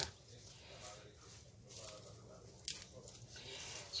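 Faint rustling and crackling of crisp escarole leaves being picked and pulled apart by hand, with one sharp click a little before the end.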